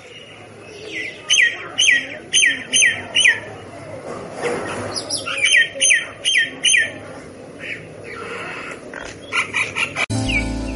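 Myna calling: runs of sharp, falling notes repeated about twice a second, in two bursts with a pause between, then a quicker run near the end.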